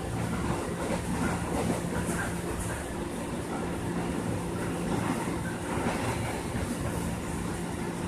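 Electric commuter train running, heard from inside the carriage: the steady rumble of the wheels on the track with a low, even hum.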